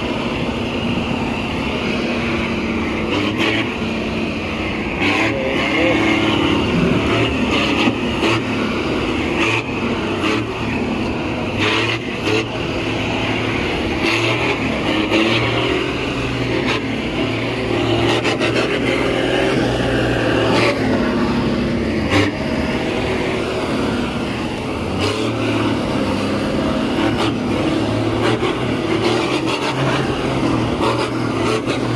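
Nissan Navara pickup's engine working under heavy load as it tows a loaded Isuzu Forward truck out of deep mud on a strap; the engine note rises and falls steadily, with scattered short knocks.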